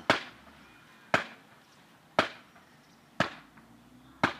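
Four sharp blows struck into the ground, evenly spaced about a second apart, each cutting off quickly, hitting the earth to send vibration through the soil.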